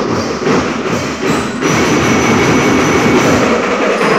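A school marching band playing loud percussion-driven music with a fast, regular drum beat; about one and a half seconds in the sound thickens and a steady high tone joins in.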